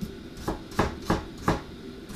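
Daikon radish being chopped with a square-bladed vegetable knife on a cutting board: four sharp knife strikes against the board, about three a second.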